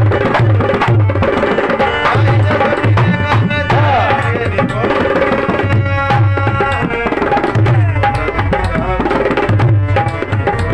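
A dholak played in a fast, driving rhythm: deep bass-head strokes in a repeating pattern under a dense run of quick, sharp treble strokes.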